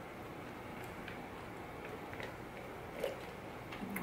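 Faint sounds of someone drinking from a plastic shaker bottle: a few soft swallows and small clicks, with a slightly louder one about three seconds in, over quiet room tone.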